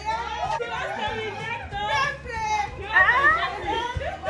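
Several people talking at once, their voices overlapping in lively chatter.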